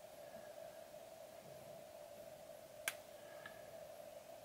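Quiet room tone with a faint steady hum, and one sharp click about three seconds in.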